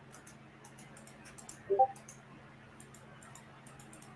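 Irregular computer mouse clicks as stitch points are placed while digitizing an embroidery design, over a faint steady hum. A brief louder pitched sound comes a little under two seconds in.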